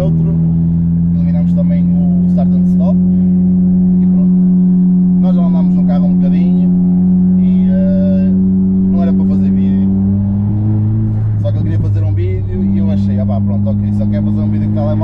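A Stage 1 remapped Golf 7 GTI's turbocharged four-cylinder engine, heard from inside the cabin while driving, holding a steady drone. About ten seconds in the note breaks and shifts, then settles on a steady pitch again near the end.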